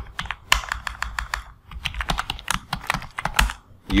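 Computer keyboard typing: quick, irregular keystroke clicks as a password is entered at a login prompt, with a short pause about a third of the way in, then the first letters of a command.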